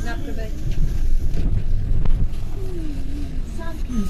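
A London double-decker bus's engine and road noise, a steady low rumble, heard from on board while it drives. A person's voice talks over it near the start and again later.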